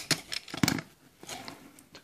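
Handling noise from a Canon EOS 500 film SLR with its EF 28-80mm zoom lens being turned in the hand: several short clicks and rubs in the first second, then fainter rustling.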